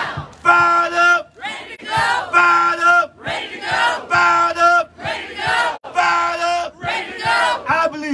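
Protest call-and-response chanting: a man shouts short chant phrases into a PA microphone and the crowd shouts back, in a steady repeating rhythm of held shouted syllables about every second and a half to two seconds.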